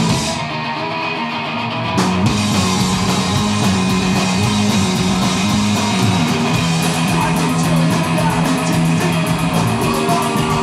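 Live punk rock band playing an instrumental passage on electric guitar, bass guitar and drum kit. For the first two seconds the cymbals drop out and it is a little quieter; the full band with cymbals crashes back in about two seconds in.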